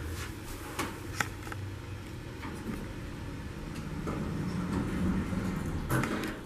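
Otis hydraulic elevator cab door closing with a few light clicks, then, about four seconds in, a low steady hum grows as the hydraulic pump starts and the car begins to rise.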